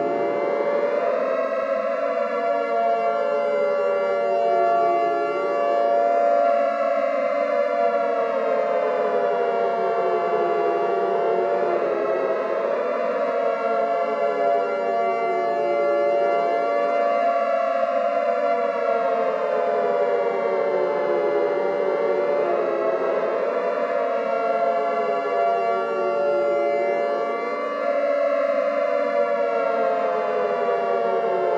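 Air-raid style civil-defense siren wailing, its pitch rising and falling about every five seconds, with several wails overlapping over steady held tones.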